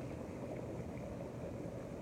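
Jacuzzi jets running: a steady low rush of churning water and pump noise.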